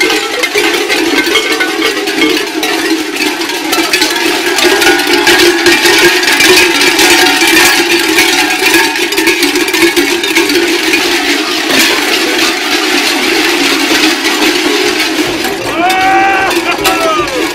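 Many large metal bells worn at the lower back by a group of Croatian Zvončari carnival bell ringers, clanging together without a break as the wearers run.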